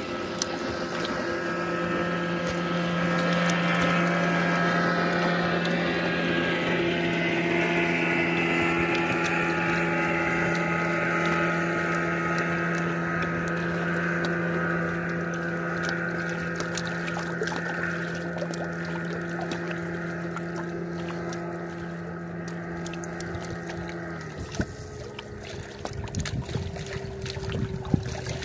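A motorboat's engine drones steadily as it cruises past on a lake, loudest a few seconds in and then slowly fading, over the lapping of small waves. A few seconds before the end the engine note breaks off, leaving waves splashing against the rocks at the shore.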